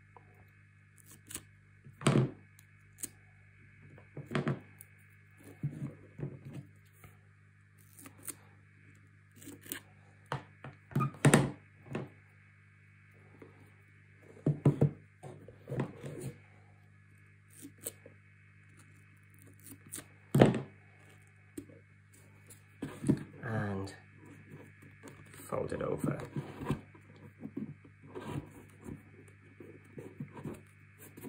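Scissors snipping V notches in black frame tape on a chipboard box, with the box handled and knocked against the table: scattered sharp clicks and thunks, over a faint steady hum.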